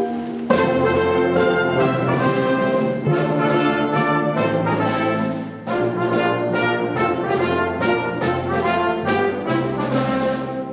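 A youth wind band playing, with brass to the fore: horns, trombones and tubas over saxophones and clarinets. The full band comes in strongly about half a second in and plays on in accented rhythm.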